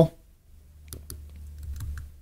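A few faint computer keyboard keystrokes about a second in, over a steady low hum.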